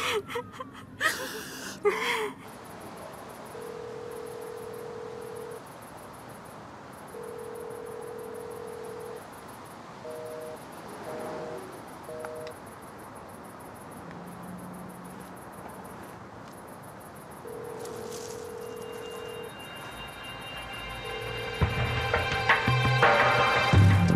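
A woman sobbing for the first two seconds. Then a phone call's ringback tone: long steady beeps of about two seconds, repeating every three to four seconds, with a few short two-pitched beeps around the middle like mobile-phone keypad tones. Music comes in near the end.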